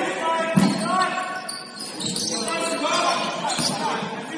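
Basketball game on a hardwood gym floor: the ball bouncing, with one loud bounce about half a second in, sneakers squeaking in short chirps, and players calling out.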